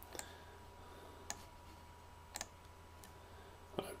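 Computer mouse clicking four times, about a second apart, over a faint steady hum.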